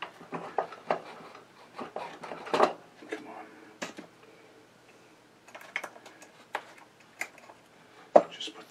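Scattered clicks and knocks of metal hand tools and a small bench vise being moved about and set down on a workbench, with a quieter pause in the middle.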